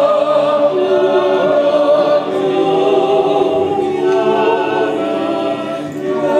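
Appenzell men's yodel choir singing a cappella in close harmony, holding long chords.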